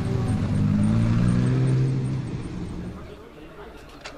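Lamborghini Huracán Performante's naturally aspirated V10 accelerating away. The engine note climbs in pitch for about a second and a half, then fades out by about three seconds in.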